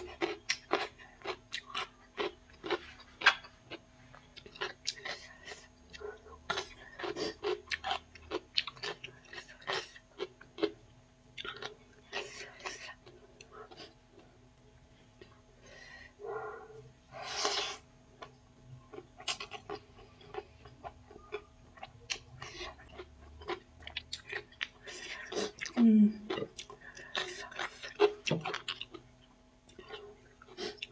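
Close-up chewing of spicy chow mein noodles and crunchy cucumber salad eaten by hand: many short wet smacks, clicks and crunches in an uneven run, with a longer breathy sound about halfway through.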